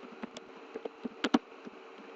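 Computer keyboard keys being typed, about eight quick irregular clicks, over a faint steady hum.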